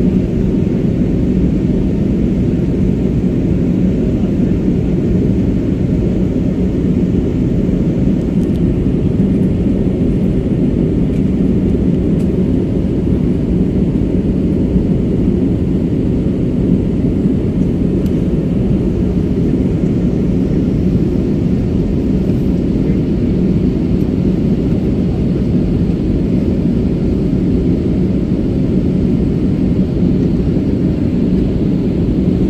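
Steady, deep cabin drone of an airliner in flight, the engines and rushing airflow heard from inside the cabin at a window seat.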